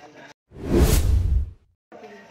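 An editor's whoosh transition sound effect, about a second long, swelling and fading between two short gaps of dead silence.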